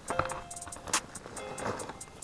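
Handling noise of a Spectra-fabric backpack being opened: fabric rustling and a sharp click about a second in, over music.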